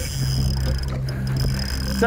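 A boat's outboard motor idling with a steady low drone, over a haze of wind and water noise.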